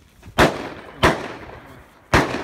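Two gunshots about two-thirds of a second apart, each a sharp crack followed by a long echoing tail.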